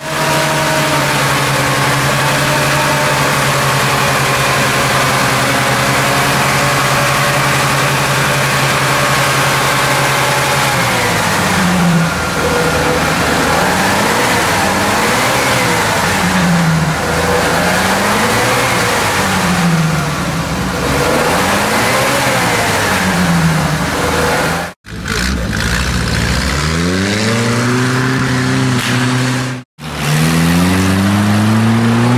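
UAZ-469 off-road vehicle's engine, first held at steady revs, then revving up and down over and over, about every two seconds, as it works through deep mud. Near the end the sound cuts out sharply twice, and an engine then rises in revs a couple of times.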